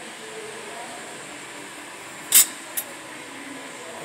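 Galvanized steel framing brackets clinking as they are handled: one sharp metallic clink a little past halfway and a fainter one just after, over a steady background hum.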